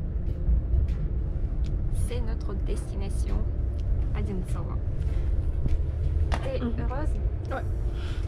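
Steady low rumble of an electric commuter train running, heard inside the passenger carriage, with quiet voices over it.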